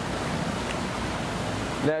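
Steady rushing noise with no distinct events.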